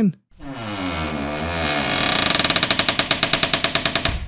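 Creaking-door sound effect: a drawn-out hinge creak that falls in pitch, then breaks into a fast rattling creak of about fifteen pulses a second before fading out.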